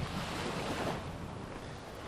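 Surf washing onto a sandy beach: a steady hiss of waves that swells a little around the first second.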